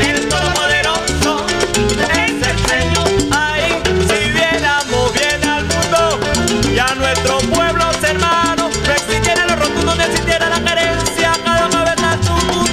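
Live salsa band music: timbales and cymbals, bass guitar and maracas keeping a steady beat under a melody with sliding notes.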